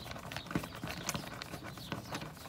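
Hand screwdriver driving a machine screw through a steel grab-bar flange into a toggle bolt: a run of uneven clicks and light scrapes as the handle is turned.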